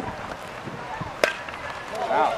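A single sharp crack of a baseball bat hitting the pitch, a little over a second in, the loudest sound, over low crowd chatter.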